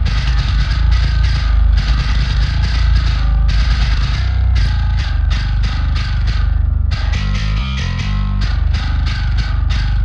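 Metal bass guitar stem playing a chugging riff with short, regular stops, then a run of changing low notes about seven seconds in. It is playing through a short-reverb stereo-widening bus with its low-cut EQ switched off, so the low sub frequencies are widened too and the bass loses some of its weight.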